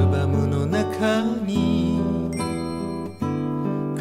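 Nylon-string classical guitar strumming chords, with a brief dip and a new chord struck a little after three seconds in.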